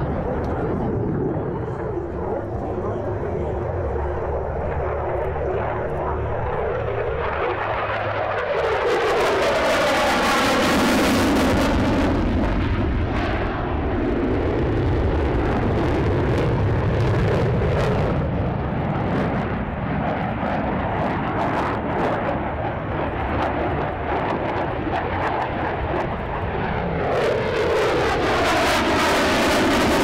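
F-16 fighter jet engine running throughout the demonstration flying. The noise grows louder about nine seconds in and again near the end, with a sweeping, phasing whoosh as the jet passes.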